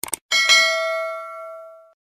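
Two quick mouse-click sound effects, then a single bell ding that rings with several steady tones and fades away over about a second and a half: the notification-bell sound of a subscribe-button animation.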